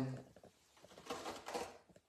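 Faint rustling handling noise from a phone being turned in the hand, about a second in, after a spoken word trails off.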